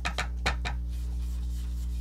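Round ink blending brush being loaded on an ink pad and rubbed over cardstock: a few short dabbing, brushing strokes in the first second, then faint rubbing.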